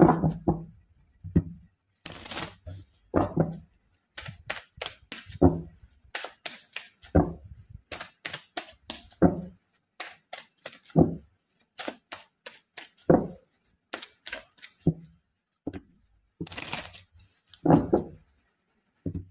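A tarot deck being shuffled by hand: a run of irregular card slaps and snaps, with a duller knock about every two seconds as the deck is worked.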